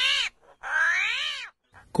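An animal's high-pitched calls: the end of one call right at the start, then a second full call about half a second in, each arching up and then down in pitch and lasting under a second.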